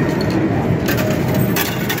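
Coin-pusher chips clattering and clinking in a continuous jumble as a big payout is gathered into a plastic cup, over a steady arcade din.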